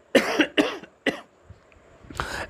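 A man coughing three times in quick succession, the first two coughs longer and the third short.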